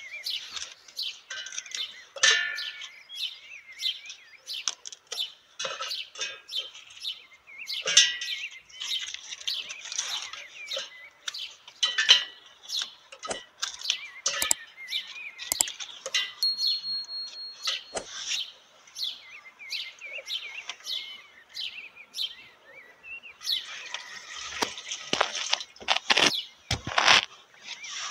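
Dried banana peels crackling and rustling as they are handled and dropped into a stainless steel chopper bowl, an irregular run of dry clicks, with birds chirping in the background.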